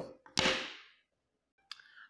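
A sharp click, then a short swish that fades over about half a second, from a clear plastic ruler being handled on a sheet of paper.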